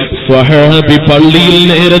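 A man's voice in a melodic, chant-like delivery, holding long steady notes, with a brief break just after the start.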